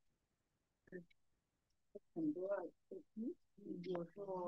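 About two seconds of near silence, then quiet, faint speech over the video-call audio.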